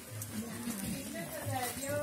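A quiet voice between louder sentences: faint, drawn-out, hesitating vocal sounds, clearest near the end.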